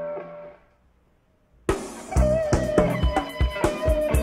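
Indie/alternative rock song intro: a held note fades away, a second of near silence follows, then the full band comes in about a second and a half in with drum kit and electric guitar.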